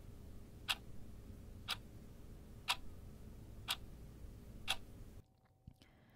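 Clock ticking, one tick a second over a faint low hum, stopping about five seconds in.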